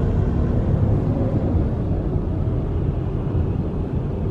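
Steady low rumble of tyre and wind noise inside a moving car's cabin, driving through strong dust-storm wind.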